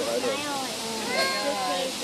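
A person's voice with gliding, drawn-out pitch, not clear enough to make out words, over a steady background hiss.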